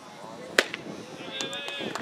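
A baseball smacking into a catcher's mitt with one sharp pop, followed by a long drawn-out shouted call, the umpire calling the pitch a strike.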